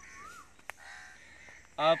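Birds calling in the background: a short rising-and-falling whistled note, then a longer, fainter call. A single sharp click falls in between.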